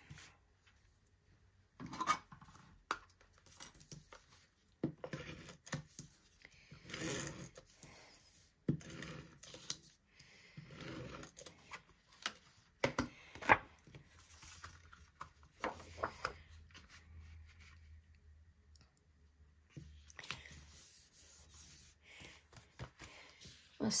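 Card stock being handled on a tabletop as the white inside panel is put into a greeting card: irregular short rustles, slides and scrapes of paper with a few sharp taps.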